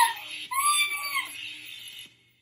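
A woman's high-pitched excited squeal, held for about a second, with a short rising squeal at the very start.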